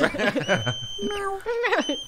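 Marmot sound effect laid into the track: a steady high whistle held for most of a second, a short run of falling notes, then the whistle again near the end, over talk and laughter.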